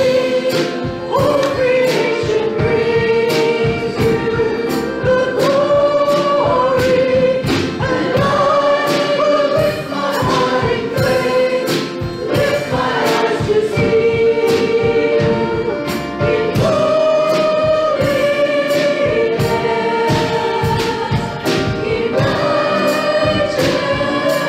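Congregation singing a contemporary worship song together with instrumental backing and a steady beat.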